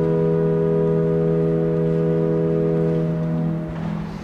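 Organ holding a sustained chord, steady, then released near the end.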